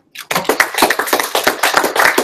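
A small group of people applauding. A dense, irregular patter of hand claps starts a moment in.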